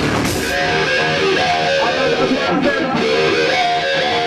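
Live rock band: the drums and full band stop about half a second in, leaving an electric guitar playing on its own.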